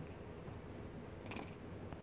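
A dog's low, rumbling growl during play, continuous and cutting off suddenly at the end.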